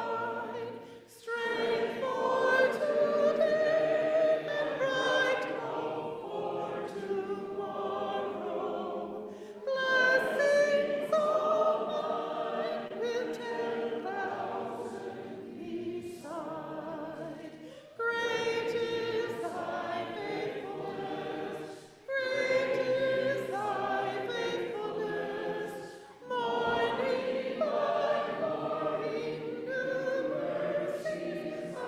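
Congregation singing a hymn together in parts, led by a song leader, in long sung lines with short breaths between them.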